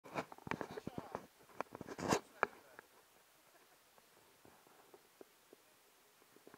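Bare feet splashing through shallow river water as people wade in: a quick run of splashes in the first two and a half seconds, the biggest about two seconds in, then only a few faint splashes.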